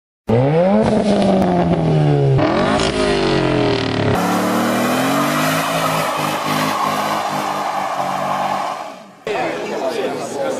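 Race car engines revving and accelerating hard, in several spliced clips. The pitch climbs and drops over the first few seconds, then a steadier high-speed run follows, with an abrupt break about nine seconds in.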